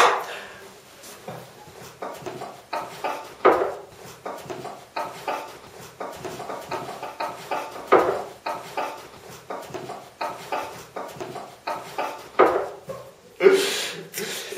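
Two men laughing in short, breathy bursts, with a few louder laughs breaking out among them.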